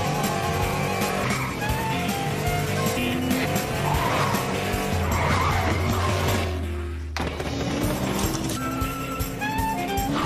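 Cartoon background score playing in steady notes, with noisy sound effects mixed in about four to five seconds in.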